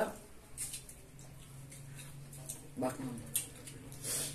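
Quiet room at a meal table: a faint steady low hum and a couple of light clicks, with one short spoken word near the end.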